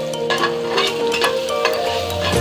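Ginger strips frying in bubbling oil in a frying pan, stirred with a utensil that clicks and scrapes against the pan several times, over background music.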